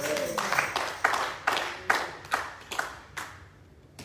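Handclapping: a run of sharp, irregular claps, roughly four a second, that dies away after about three seconds.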